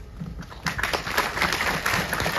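Audience applauding: clapping starts about half a second in and carries on as a dense patter of claps.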